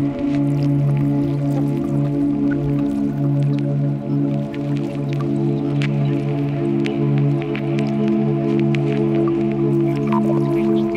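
Ambient music from a eurorack modular synthesizer (Assimil8or, Arbhar, Nautilus and Data Bender, with reverb): a sustained low drone chord held steady, with short scattered clicks over it.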